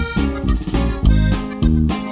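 Norteño band playing an instrumental passage on button accordion, bajo sexto, electric bass and drums, with a steady beat and no singing.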